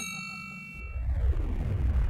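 A ringing metallic ding that fades out over about a second, then a low rumble with a falling sweep.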